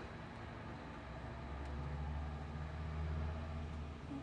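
Low, steady hum from the car, growing slightly louder toward the middle and easing off near the end.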